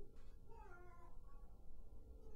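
A faint, short high-pitched cry that slides down in pitch about half a second in, over a steady low room hum.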